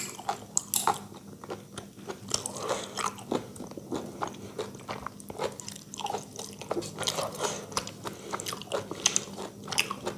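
Close-miked chewing and wet mouth sounds of a person eating rice and curry, in irregular smacks and clicks, with fingers mixing rice and gravy on a metal plate.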